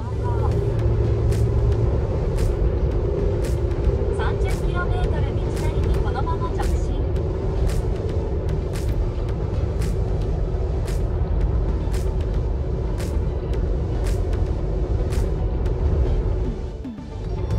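Road noise inside a car cruising on an expressway: a steady low rumble of tyres and engine with a constant drone, and faint light ticks about twice a second.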